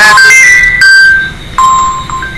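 A short electronic tune of plain beeping notes. The notes step up in pitch and back down, with a brief pause before a last low note near the end.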